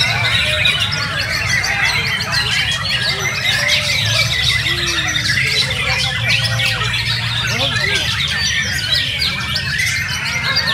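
Many caged white-rumped shamas singing at once in a songbird contest: a dense tangle of overlapping whistles, chirps and rapid phrases, over a steady low murmur of background noise.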